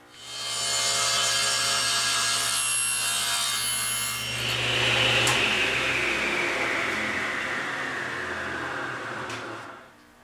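Table saw starting up and running steadily, cutting a test piece of scrap wood held in a crosscut sled. About five seconds in, the motor is switched off and the blade's whine falls steadily as it spins down, dying away near the end.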